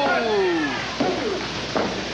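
A man's drawn-out "ooh" exclamation that slides steadily down in pitch, followed by a couple of shorter vocal sounds, over steady background noise.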